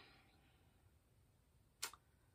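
Near silence: room tone, with one short click near the end.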